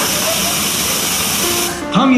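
Television static: a loud, even white-noise hiss used as a channel-switch effect between TV clips, cutting off suddenly near the end.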